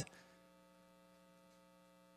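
Near silence with a faint, steady electrical hum made of several evenly spaced tones.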